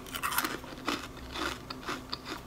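Chewing a crunchy red chip: a few quiet, irregular crunches.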